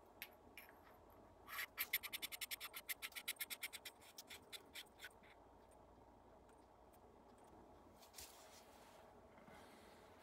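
Threaded metal airgun regulator housing and power plenum being screwed together by hand: a quick, faint run of small scraping clicks, about ten a second, lasting a couple of seconds, then a few scattered clicks. Faint rubbing of the parts follows near the end.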